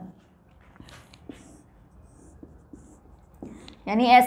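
Felt-tip marker scratching faintly on a whiteboard in a series of short strokes as lines are drawn under the writing.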